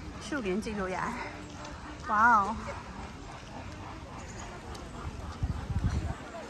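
People talking as they walk by, with one short, loud wavering call about two seconds in. Low rumbling near the end.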